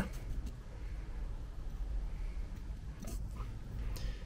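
Camera handling noise as the camera is set down on a plastic wheelie bin lid: a low rumble throughout, with a few faint knocks about three seconds in.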